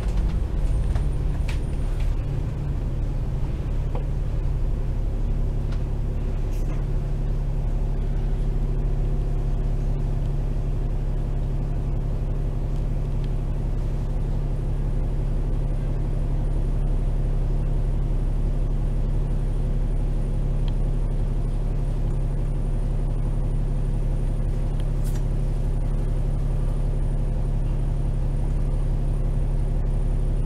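Double-decker bus's diesel engine idling steadily, heard from inside on the upper deck while the bus waits in traffic.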